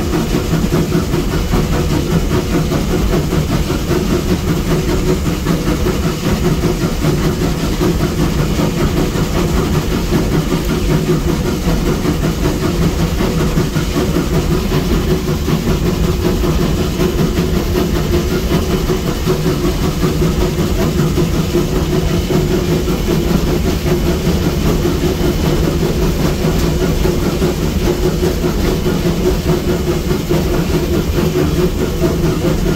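Inside the cab of Virginia & Truckee No. 29, a 1916 Baldwin steam locomotive, under way: a steady, loud rumble of the running locomotive and its wheels on the rails, with no break.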